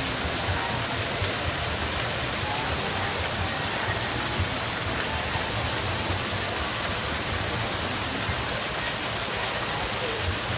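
Steady rush of an artificial waterfall pouring down rocks into a pool, an even, unbroken noise.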